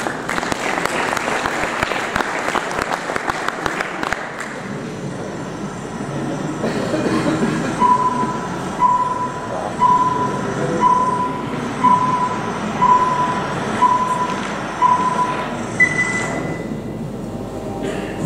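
Vintage film countdown leader played over a hall's loudspeakers: a crackling, rattling old-projector clatter, then eight short beeps about once a second counting down, and one higher, longer tone near the end.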